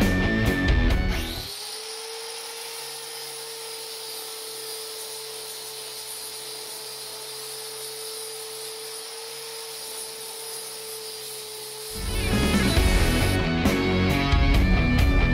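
Rock music with guitar cuts off about a second in, giving way to a handheld angle grinder running steadily with a constant whine as it grinds down the welds on a sheet-metal amplifier chassis. The music comes back in near the end.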